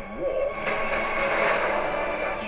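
Movie trailer soundtrack playing back: a short sliding tone, then a broad rushing swell of noise that builds from under a second in.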